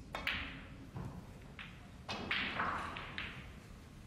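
Snooker cue tip striking the cue ball, followed by sharp clicks of balls colliding and a longer rattle about two seconds in as a ball drops into a pocket.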